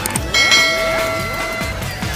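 A bright bell chime strikes about half a second in and rings on for over a second: the notification-bell effect of a subscribe-button animation. Electronic background music plays under it.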